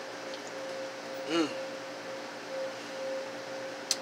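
Steady hum of refrigerated drink coolers, with a man's short 'mmm' of approval about a second in.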